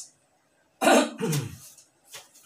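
A man coughs once, about a second in: a sharp cough with a short voiced tail like a throat-clear.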